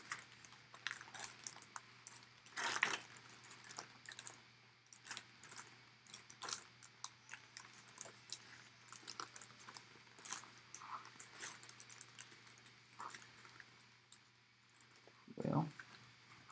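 Clear plastic bag wrapped around a folded baseball jersey crinkling and rustling as hands work it open, in faint irregular crackles with a louder rustle about three seconds in.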